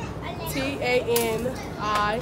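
Speech only: a woman's voice spelling out a username letter by letter.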